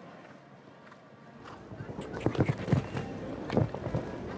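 A show-jumping horse's hoofbeats on grass, getting louder as it canters up to a fence, with heavy thuds of takeoff and landing near the end.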